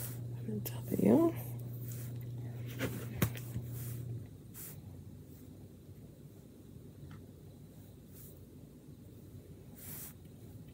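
Light taps and clicks of wooden letter cutouts being handled and pressed onto a wooden sign by hand, over a low steady hum that stops about four seconds in. A brief murmur of a voice about a second in.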